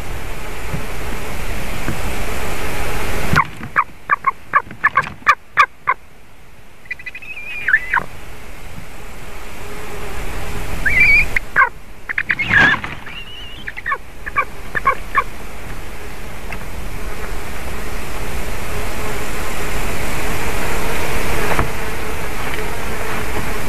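Eagle calling: a quick run of about eight short, sharp yelps, then a few higher drawn-out cries, and another burst of calls a few seconds later. A steady rush of wind noise lies under it all.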